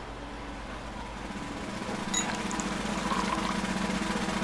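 A low, steady droning hum that slowly grows louder, with a brief light click about two seconds in.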